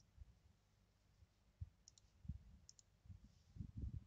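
Faint computer mouse clicks, two quick press-and-release pairs about a second apart, over near-silent room tone with a few soft low thumps.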